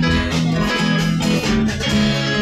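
Live band playing an instrumental stretch between vocal lines: strummed acoustic-electric guitar over bass guitar and drums.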